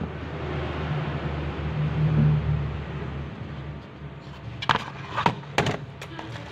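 A low rumble swells and fades over the first three seconds. Then, near the end, a few sharp clicks and knocks come as hands handle the charger's cardboard box and its packaging.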